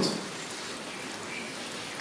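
Steady room noise between answers: an even hiss with no distinct sound standing out.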